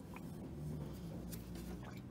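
Faint, light clicks of the metal automatic-transmission sump pan being handled as it is lowered off the gearbox, over a steady low hum.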